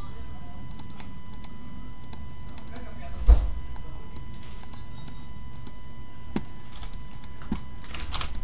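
Computer keyboard clicks, typed in short irregular runs as an equation is entered into a calculator program, with one loud low thump about three seconds in.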